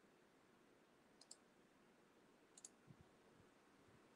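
Near silence broken by two faint computer-mouse clicks, each a quick double click, about a second and a half apart.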